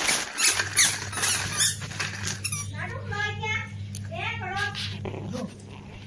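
Plastic baby walker wheels clattering over brick paving in the first second or two, then a baby's high-pitched squeals and babble, over a steady low hum.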